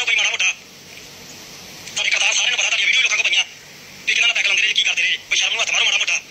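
A person speaking in several short stretches with pauses between, the voice thin and tinny like audio heard over a telephone.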